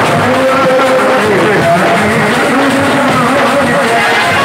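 Loud live brass band music, trumpets with drums, the melody sliding from note to note.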